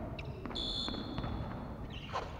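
A single short, high-pitched steady tone about half a second in, dying away in the hall's echo, over low background noise.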